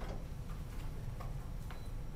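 A pause in a lecture room: a steady low hum with a few faint, scattered clicks, about four in two seconds.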